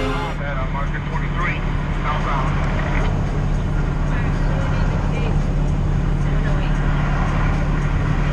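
Western Star 5700 semi truck cruising at highway speed, heard from inside the cab: a steady low engine drone with road noise. Faint snatches of voice come and go over it.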